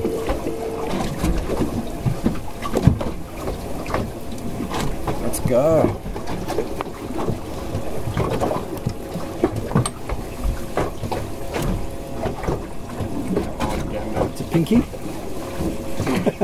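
Muffled, indistinct voices over the steady noise of wind and water around a small drifting boat, with scattered light clicks.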